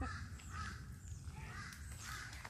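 A quiet moment with a few faint, short bird calls: one at the start, a fainter one about half a second in, and another near the end.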